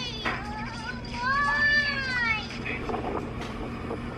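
A cat meowing: a drawn-out meow that rises and falls in pitch about a second in, after the tail of another at the start.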